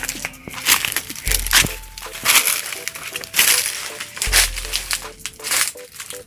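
Someone pushing on foot through dense, dry undergrowth: irregular crunching and rustling of dry leaves and snapping stems. Background music with long held notes and low bass plays underneath.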